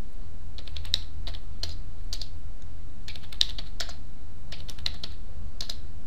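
Computer keyboard typing: irregular keystrokes in short runs, over a steady low hum.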